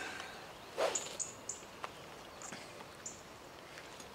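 A golf driver striking a ball off the tee, one short sharp hit about a second in. Small birds chirp faintly in brief high notes through the rest.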